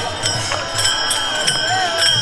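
Small brass hand cymbals (taal) struck in a steady rhythm, their ringing held between strikes, over the voices of a walking crowd.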